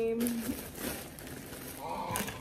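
Crinkling and rustling of a bag and its contents being handled while packing.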